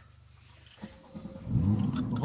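Porsche 991 Carrera 4's 3.4-litre naturally aspirated flat-six, heard from inside the cabin, idling low and steady, then revving loudly about a second and a half in, its pitch rising and falling.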